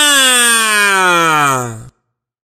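A man's voice imitating a police siren: one long "ngwaaa" wail that falls steadily in pitch and cuts off just before the end.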